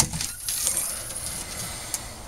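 Hinged fiberglass deck hatch being unlatched and lifted open: a sharp click at the start, then a light scraping as the lid rises, and a smaller click near the end.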